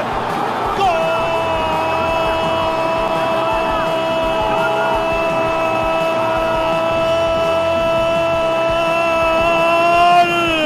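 A Spanish-language football commentator's drawn-out goal cry, 'gooool', held on one high, steady pitch for about nine seconds without a break.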